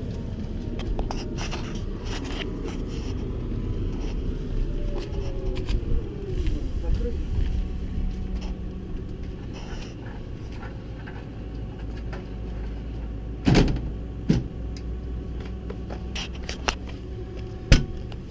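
A tractor's diesel engine running steadily, with a few knocks and a sharp click near the end as the cab door latch is opened.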